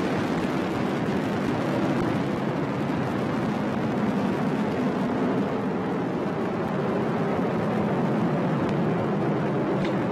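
Atlas V N22 rocket's RD-180 first-stage engine and two solid rocket boosters in flight, a steady low rumble.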